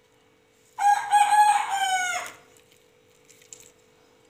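A rooster crowing once, about a second in: a single call of about a second and a half that drops in pitch as it ends. A faint steady hum runs underneath.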